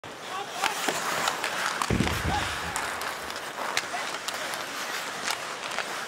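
Ice hockey being played in an arena: a steady crowd din with repeated sharp clacks of sticks on the puck and skates on the ice.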